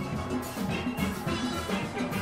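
A steelband playing: many steelpans striking rapid pitched notes over a drum kit keeping a steady beat.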